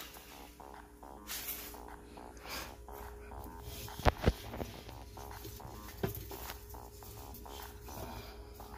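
Hand-handling noises in a plastic reptile tub: light scrapes, then two sharp knocks close together about four seconds in and another about two seconds later, over faint background music.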